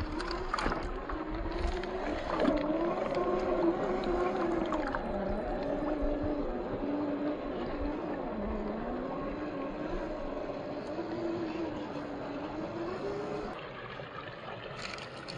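Electric motor and gear whine of an Axial SCX10 II RC crawler with a 540 35T brushed motor, rising and falling in pitch as the throttle changes, with a few light knocks in the first few seconds.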